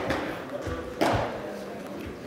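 A sharp pop of a pitched baseball hitting a catcher's mitt about a second in, ringing briefly in a large indoor hall.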